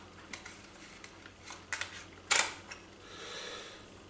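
Plastic clicks and a scrape as a PL compact fluorescent tube is worked out of the desk lamp's G23 holder, a few light clicks and one louder scrape about two and a half seconds in.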